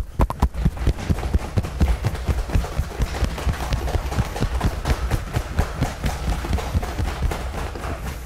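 Cupped hands slapping the center of the chest in a fast, steady run of pats, several a second: the cupping self-massage of a qigong set.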